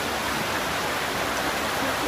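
A brook running over a stony bed: a steady, even rushing of water.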